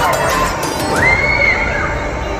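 Riders screaming on a spinning amusement ride: one long, high scream starts abruptly about halfway through and is held, over background music and crowd noise.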